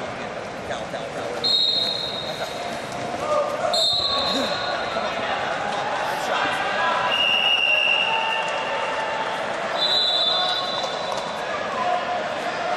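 Wrestling-tournament hall ambience: crowd chatter and voices echoing around a large hall, with four short high whistle blasts from referees on nearby mats.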